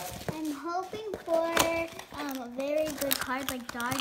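A young girl speaking softly and haltingly, with a few light clicks and taps of a cardboard box being handled between her words.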